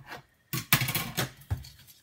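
Hand-cranked die-cutting and embossing machine: the stack of cutting plates scrapes and rasps for about a second as it comes out through the rollers, ending in a sharp click.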